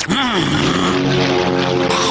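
A cartoon character's voice that slides down in pitch, then holds a steady, low, droning hum. A short swish comes just before the end.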